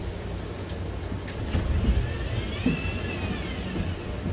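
Bus engine idling with a steady low rumble, heard from inside the bus. A few short clicks come about a second and a half in, and a faint high tone rises and falls briefly past the middle.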